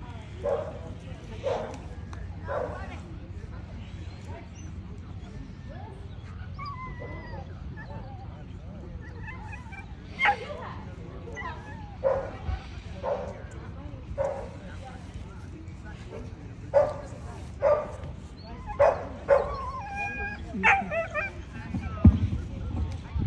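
A dog barking in short, sharp barks: three in the first few seconds, then a quicker run of them through the second half.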